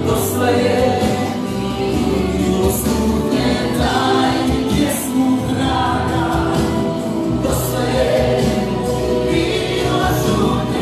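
Choral music: a group of voices singing with musical accompaniment.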